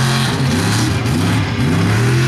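Mega truck's big engine at full throttle, revving hard, its pitch dipping and climbing again twice as the throttle comes off and back on while it charges the obstacle.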